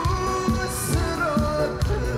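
Korean trot song performed live: a male voice singing a wavering, vibrato-laden melody over a backing band with a steady beat about twice a second.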